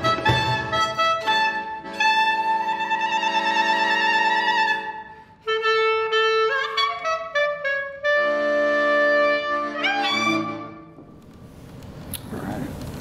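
Klezmer band playing the closing phrases of a tune: clarinet leads with long held notes over violin, cello and accordion. There is a brief break about five seconds in, a rising glide near the end, and then the music dies away.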